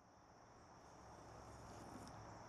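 Faint, steady, high-pitched chorus of insects in the open air, fading in from silence.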